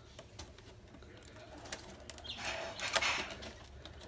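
Light clicks and creaks of green carrizo reed as a knife is worked into the tightly closed rim of a woven basket, with a louder rasping scrape about two and a half seconds in. The tight weave of the closing rim resists the knife.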